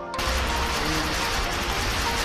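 Soft background music, suddenly swamped about a fifth of a second in by loud, steady outdoor noise with a heavy low rumble. The music carries on faintly beneath it.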